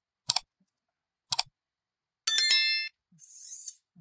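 Two sharp clicks about a second apart, then a serial bus servo (Feetech STS3215 type, 1:345 gear ratio) driving the robot arm's base joint with a high whine of several steady tones for about half a second as it rotates, followed by a faint hiss.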